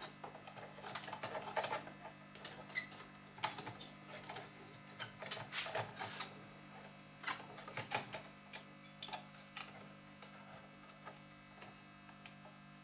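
Irregular light clicks, taps and small rattles of a soldering station's plastic casing and internal parts being handled and fitted together, thinning out over the last couple of seconds, over a faint steady hum.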